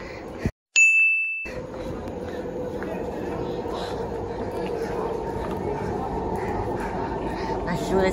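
A single bright ding, a sound effect set into a brief total silence, rings out about a second in and fades within half a second. After it comes steady underground train-station platform noise with a faint, even hum.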